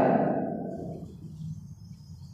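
Faint scratching and squeaking of a felt-tip marker writing on a whiteboard, over a low steady room hum, as the last spoken word trails off at the start.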